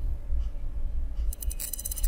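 Computer mouse scroll wheel clicking rapidly for under a second, starting a little past the middle, over a steady low rumble of microphone background noise.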